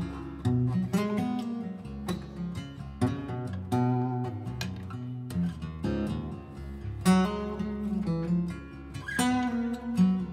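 Acoustic guitar playing a lead line in D Mixolydian: a run of plucked single notes, several a second, ringing over low sustained strings, in double drop D tuning tuned down a half step.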